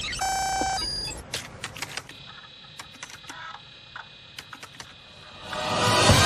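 A short electronic beep, then a brief higher tone, followed by scattered light clicks over a faint steady high whine from a video monitor console being handled. Music swells in near the end.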